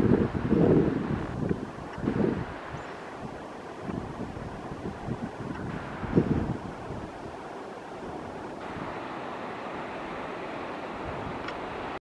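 Wind buffeting the microphone in gusts, strongest in the first couple of seconds and again about six seconds in, then settling into a steadier, quieter rush.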